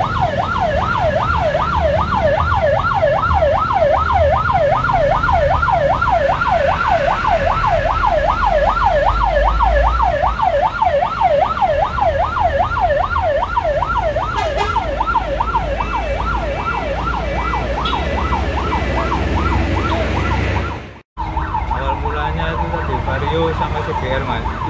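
Fast electronic yelp siren on an evacuation tow truck, its pitch sweeping up and down about three times a second, over a low rumble of road traffic. It cuts off suddenly near the end.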